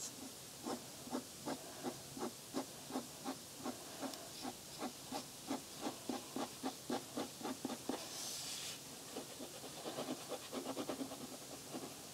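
Pen drawing short lines on paper: a run of quick, even scratching strokes, about two to three a second, with a brief rustle about two-thirds of the way through, then a quicker flurry of strokes near the end.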